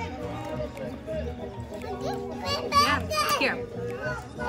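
Background music with children's voices chattering over it; a child's high-pitched voice is loudest from about two and a half seconds in.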